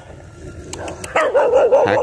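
A dog giving a high, wavering cry about a second in, lasting most of a second.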